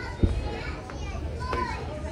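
Children's voices and people chatting, with a sudden low thump about a quarter second in.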